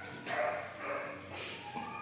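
A small dog giving a few short, fairly quiet whines and yips.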